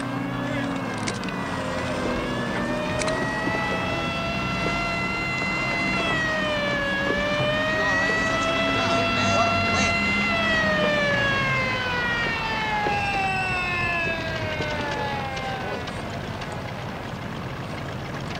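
Sirens wailing, their pitch slowly rising and falling over several seconds, over a steady low engine rumble.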